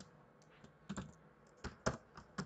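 Computer keyboard keystrokes while typing: about five separate, unevenly spaced clicks, the two loudest close together near the end.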